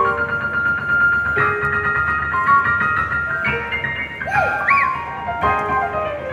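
Yamaha CP4 Stage digital piano played live through the PA, with long held notes ringing under new chords struck about a second and a half in and again past the three-second mark.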